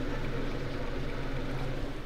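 A steady low hum with a faint hiss over it, unchanging throughout.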